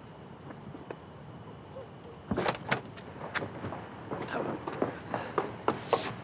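A low outdoor hush, then from about two seconds in a run of sharp clicks and knocks: a car door being handled and opened, with footsteps.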